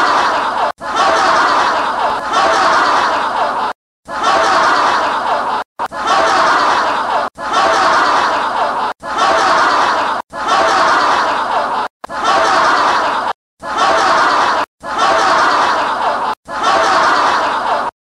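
A group of people laughing mockingly, in a rapid string of about eleven short laughter clips, each cut off abruptly by a brief dead silence before the next begins.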